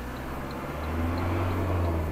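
Van engine running with road noise inside the cab while driving slowly in traffic; about a second in, a low engine drone grows louder and holds.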